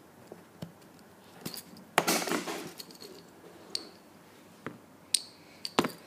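Hard plastic clicks and knocks from a small plastic toothpick container being opened and handled, with a short rattle about two seconds in and a ringing click near the end.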